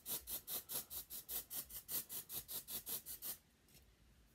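Fingers scrubbing dry shampoo into short hair in quick, even rubbing strokes, about four or five a second, stopping shortly before the end.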